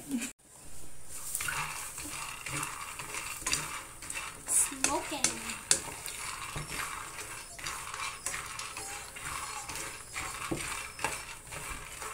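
Raw peanuts being dry-roasted and stirred with a wooden spatula in a non-stick frying pan: a steady rattle and scrape of nuts against the pan, with many sharp little clicks.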